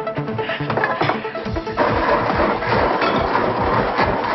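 Background music, then about two seconds in a Blendtec blender starts and runs steadily, blending a brown sauce mixture.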